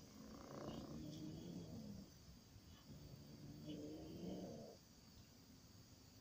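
Domestic cat growling low while guarding a caught mouse: two long, wavering growls, the second stopping about three-quarters of the way through, a warning to another cat coming near its prey.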